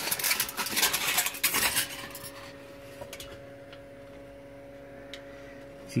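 Aluminium foil crinkling and crackling as it is handled, for about two seconds, then a few faint clicks over a low steady hum.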